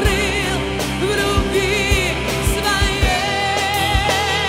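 A Russian-language Christian worship song: a voice holds long notes with vibrato over a band's sustained chords, with low drum beats underneath.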